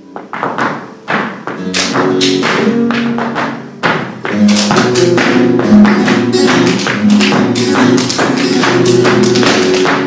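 Flamenco guitar playing under sharp percussive strikes from hand-clapping (palmas) and a dancer's shoes on the stage floor. The strikes are sparse at first, then come thicker and louder from about four seconds in.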